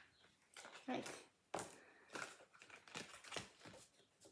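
A deck of oracle cards being shuffled and handled: faint, irregular clicks and rustles of the cards.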